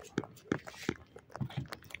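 Light handling noise from potted plants being picked up and moved: a handful of short clicks, knocks and rustles spread through the two seconds.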